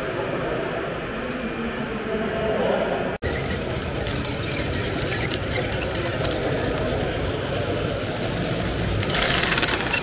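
Steady, echoing background noise of a large hall, with model trains running on an OO-gauge layout. The sound drops out for an instant about three seconds in, and there is a brief hiss near the end.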